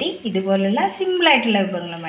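A woman's voice talking, with no other sound standing out.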